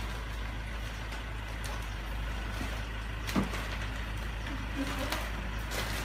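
Steady background hum of road traffic, with a couple of brief clicks and faint low voices.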